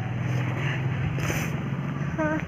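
A vehicle engine running with a steady, low, evenly pulsing drone.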